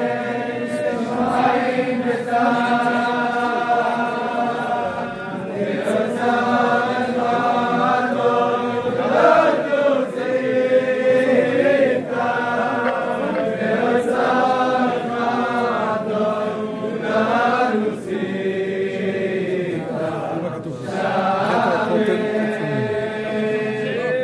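Crowd of men chanting a slow melody together in unison, with long held notes that rise and fall, and a few short breaks between phrases.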